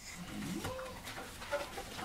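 Infant hiccups: short, squeaky hiccups about a second apart.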